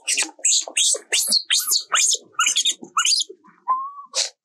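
Baby macaque screaming in distress, a fast run of short high-pitched squeals, about three a second, as its mother holds it down and refuses it milk.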